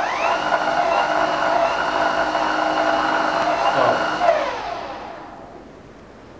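Koowheel D3M electric skateboard's dual hub motors spinning the wheels up in the air: a whine rises quickly, holds steady for about four seconds, then falls in pitch and fades out as the wheels coast down.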